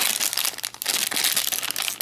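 Crinkly plastic wrapper of a London Roll snack cake crackling as it is handled and turned over in the hands.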